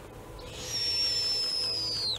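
Snowy owl giving one long, high, thin whistling call that falls slightly in pitch and drops away sharply at the end.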